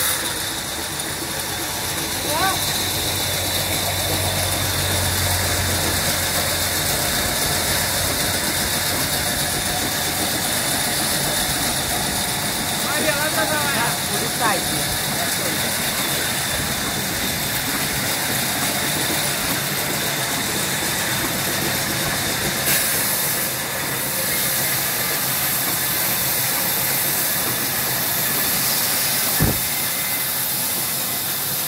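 Band sawmill running steadily with a constant hiss while a large beam of hardwood is guided along the blade.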